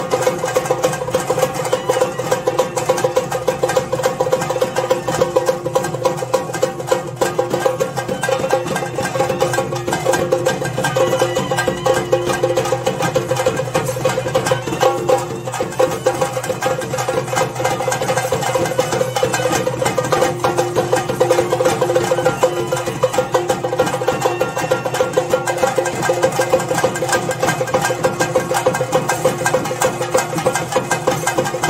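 Chenda drums played in fast, unbroken rolls, a dense stream of rapid strokes with a steady ringing pitch underneath, as ritual accompaniment to the theyyam dance.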